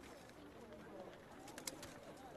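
Faint outdoor ambience at a hand-dug dry reservoir: a few sharp knocks of hoes and picks striking dry earth, about a second in and again around a second and a half, over faint bird calls.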